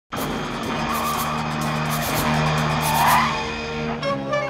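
Tyres squealing as a Pontiac Firebird Trans Am skids on pavement, over its running engine; the squeal swells twice and is loudest about three seconds in.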